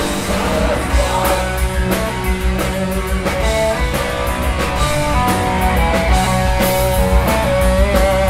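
Live crust punk band playing loud: distorted electric guitars carrying a melodic lead line of held notes over drums and crashing cymbals.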